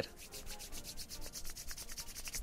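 Hands rubbing briskly together, palm on palm: a rapid, even run of soft scratchy strokes.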